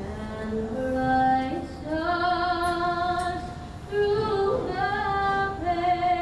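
A woman singing solo, slow, with long held notes.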